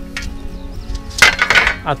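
Background music, with a clattering rattle of long aluminium trim strips knocking against each other for about half a second partway through.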